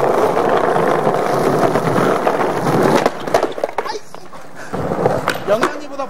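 Skateboard wheels rolling loudly over stone paving for about three seconds. The rolling stops abruptly, followed by a few sharp clacks of the board against the ground during a trick attempt, then lighter rolling and clicks.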